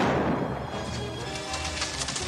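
A single revolver shot right at the start, dying away over about half a second, followed by orchestral TV-western score.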